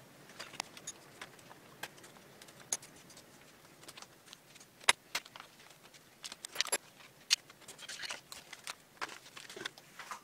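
Thin plastic zip bags crinkling, with carbon-fibre frame plates and small metal parts clicking against each other and the cutting mat as they are unpacked: a scatter of sharp clicks, the loudest about five and seven seconds in. Faint rain noise sits underneath.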